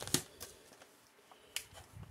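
Faint crinkling and a few short, light clicks from a thick foil MRE bag being handled, with quiet stretches between them.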